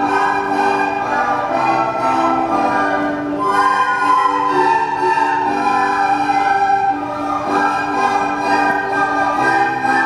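A large group of children playing recorders together, holding sustained melody notes that change every half second or so. Lower accompanying notes sound underneath.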